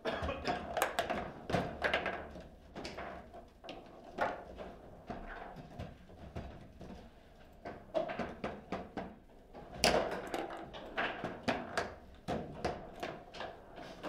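Table football in play: quick, irregular knocks as the ball is struck by the rod figures and bounces off the table, with rods clacking as they are slid and spun. The hardest knock comes about ten seconds in.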